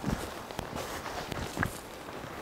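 Footsteps and crutch tips of a man walking on two crutches over dry leaf litter: a few soft, uneven thumps with light rustling.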